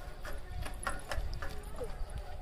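Faint, irregular taps and knocks from a toddler's shoes and hands on the wooden slats of a metal-framed bench as he clambers over it.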